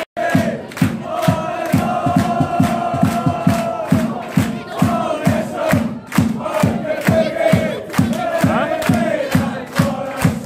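Football supporters in a stand singing a chant in unison, with rhythmic handclaps at about three a second keeping the beat.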